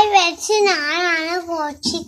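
A young boy's voice, drawn out in a long, wavering, sing-song line.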